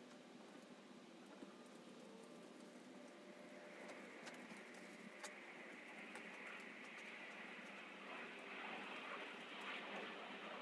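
Near silence: a faint, even hiss that grows slightly louder over the second half, with a few faint ticks.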